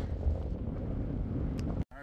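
Strong gusty wind buffeting a phone microphone: a steady low rumble that cuts off abruptly near the end.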